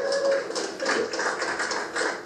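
Audience laughter mixed with scattered hand claps, a dense patter of short sharp strokes over a murmur of voices.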